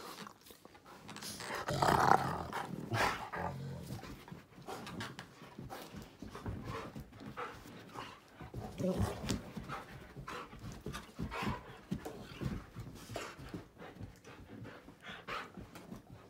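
A dog growling and grumbling, loudest in a long vocal outburst about two seconds in, then shorter grumbles mixed with scattered short knocks and scuffles.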